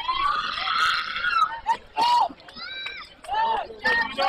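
High-pitched children's voices shouting and cheering: one long drawn-out call, then several short shouts.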